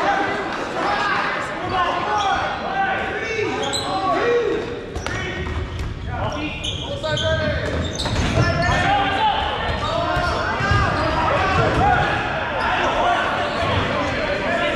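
Dodgeballs being thrown and bouncing off the gym floor in a string of sharp smacks, with players shouting over one another, echoing in a large gymnasium.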